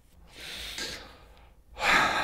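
A man breathing heavily through his hand held at his mouth: one breath out, then a louder breath drawn in near the end.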